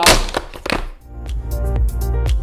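A few knocks of plastic lipstick tubes dropped into a cardboard box in the first second. About a second in, electronic background music with a steady beat and bass starts.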